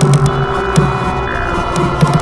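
Experimental electronic music: a low throbbing drone pulsing under layers of steady held tones, with sharp clicks scattered through it.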